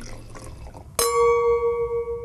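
A liquid pouring and splashing sound, then about a second in a single struck bell-like chime that rings clearly and slowly fades, an animated-logo sound effect.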